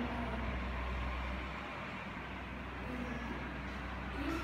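Steady low background hum and room noise, with no distinct events.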